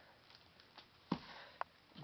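Faint handling of cardboard firework cake boxes, with a short knock about a second in and a lighter click about half a second later.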